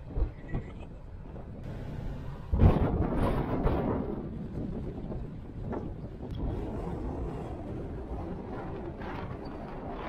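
Donkey braying, loudest from about two and a half to four seconds in, over steady wind and car noise.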